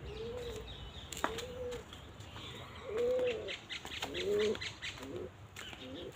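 A dove cooing: a run of about five low, rounded coos under a second apart, the loudest about three seconds in.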